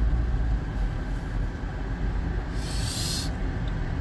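Steady low rumble of a car's cabin while driving, road and engine noise, with a brief hiss about two and a half seconds in that lasts under a second.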